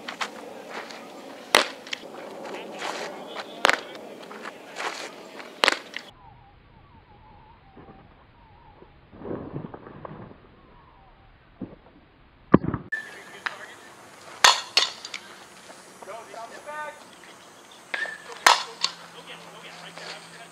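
A series of sharp smacks of a softball on leather gloves and a bat, a second or several apart, with a muffled, duller stretch in the middle.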